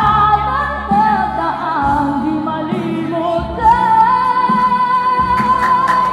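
A woman singing into a hand-held microphone over backing music; about halfway through she holds one long note.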